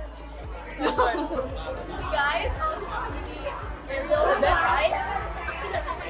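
Several women chattering over one another, with background music playing in a large hall.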